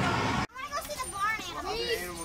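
Children's high-pitched voices talking and calling. They follow a loud, dense din that cuts off abruptly about half a second in.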